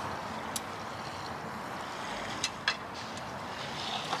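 Steady outdoor background noise with light paper-towel handling: one small click about half a second in and two quick clicks a little past the middle.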